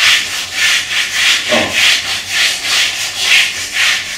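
Diamond file in a Toko Edge Tuner Pro stroked back and forth along a ski's steel side edge, about three rasping strokes a second, sharpening the edge.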